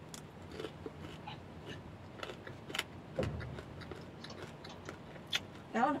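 Close-up eating sounds: biting and chewing fried fish, with many small crunches and mouth clicks and a brief low thud about three seconds in.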